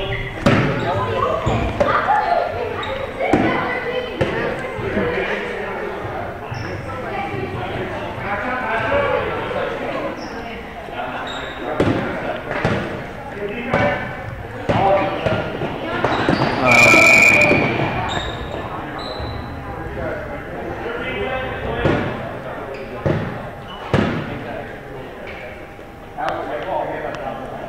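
A basketball bouncing and being dribbled on a gym floor, with sharp knocks at irregular intervals echoing in the large hall, under continual voices of players and spectators.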